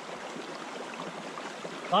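Shallow creek water running steadily over rocks.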